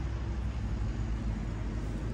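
Steady low rumble of outdoor background noise with a faint hiss above it; no distinct event stands out.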